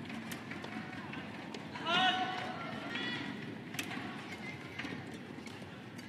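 Badminton rally: a few sharp racket-on-shuttlecock hits over the steady murmur of an arena crowd, with a loud, short, high-pitched squeal about two seconds in and a fainter one a second later.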